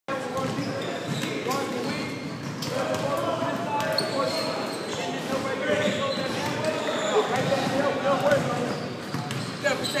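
Basketballs bouncing on a hardwood gym floor, with the voices of players talking and calling out across a large, echoing sports hall.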